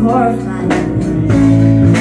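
Live band playing a song: electric guitar, electric bass, keyboard and drums.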